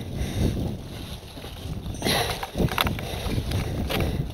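Mountain bike riding over a rocky dirt trail: wind on the camera microphone and a steady rumble, with clatter and knocks from about halfway through as the bike goes over rough ground.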